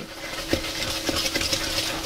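Wire whisk beating an egg into creamed butter and sugar in a mixing bowl: a steady wet stirring with a few light ticks of the whisk against the bowl.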